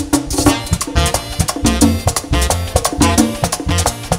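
A live Latin dance band plays an instrumental passage of a merengue, with bass and percussion keeping a steady beat.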